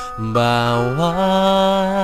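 A man singing a Tagalog ballad over a karaoke backing track. His voice glides up about a second in to a long held note.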